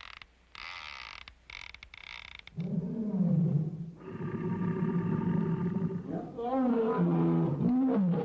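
Cartoon lion roaring: a long pitched roar starts about a third of the way in, holds steady, then ends with a wobbling, wavering pitch. It is preceded by a couple of short, faint raspy sounds.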